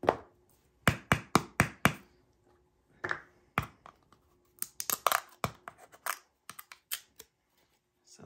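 Small plastic mica powder jar knocking and clicking against the table and its lid as it is handled, set down and opened: a quick run of about five taps about a second in, then scattered single knocks and clicks.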